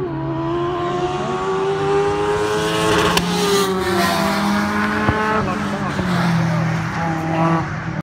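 Engine of an open-wheeled Seven-style sports car accelerating on the track with its pitch climbing, then dropping as it passes by about three to four seconds in.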